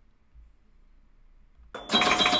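Near silence, then close to the end a sudden loud, bright, shimmering chime sound effect with a sustained ringing tone, accompanying an animated title graphic.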